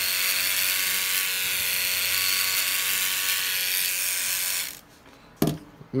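Electric T-blade hair trimmer running with a steady buzz as it is passed over arm hair, its blade still unsharpened and not catching the longer hairs. The buzz cuts off suddenly about three-quarters of the way through, and a single click follows.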